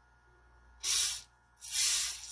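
Gas hissing out at a beer bottle's mouth in two short bursts, about a second in and near the end, as pressure is vented from a DIY counter-pressure beer gun during filling. Releasing the built-up pressure lets the beer keep flowing into the bottle.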